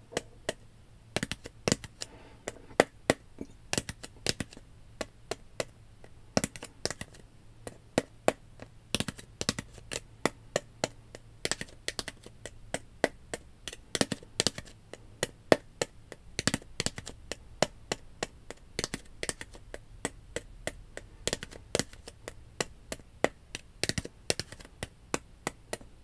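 Fingernails tapping on a clear plastic bottle: sharp, crisp clicks, a few a second, in uneven rhythmic runs.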